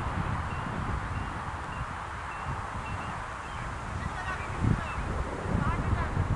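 Outdoor ambience of wind gusting on the microphone, a low uneven rumble, with faint short high chirps of birds scattered through it.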